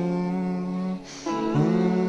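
Music: a voice humming long held notes over the song's backing, with a short break about a second in before the next note.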